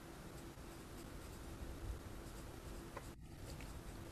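Faint room noise with a faint steady hum and light hiss from an open microphone, dipping briefly about three seconds in.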